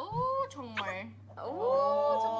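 High-pitched women's voices in Korean: a short rising exclamation near the start, another just before a second in, then a long drawn-out exclamation from about one and a half seconds, over a faint steady low hum.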